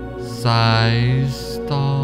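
Meditation background music: a sustained chanted voice over a steady low drone, with a new held note coming in about half a second in.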